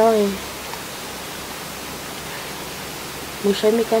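A woman speaking: the end of a sentence at the start and a few words near the end, with a steady hiss of background noise in the pause between.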